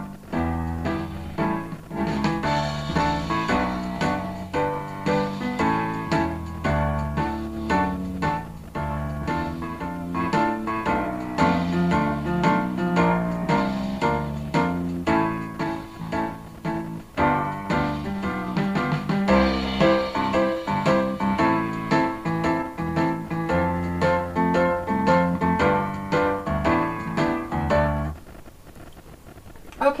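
Music played back from reel-to-reel tape through the original playback head of a 1964 Peto Scott valve tape recorder, held by hand against the moving tape. The playback is strong but a little muffled, the sound of this worn original head, and it stops about two seconds before the end.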